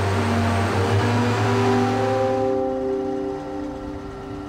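Machine noise of a remote-controlled underground mine loader running, fading out about two thirds of the way in, with sustained music tones that shift in pitch beneath it.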